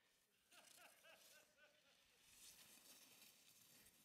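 Near silence: a faint, distant voice in the first two seconds, then a faint hiss of skis sliding through powder snow as a skier approaches.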